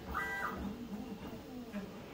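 Prusa XL 3D printer running fast through infill: its stepper motors whine as the print head moves, with a short pair of steady high tones near the start.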